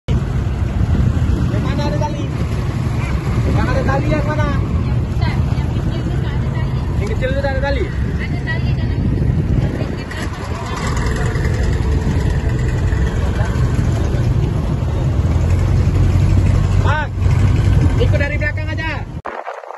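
Motorboat engine running steadily with a low hum, over wind and water noise. Voices call out briefly several times across the sea.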